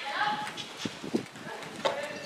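Horses walking on a sand arena floor, with a few sharp hoof strikes about a second in and near the end. A high voice is heard briefly at the start.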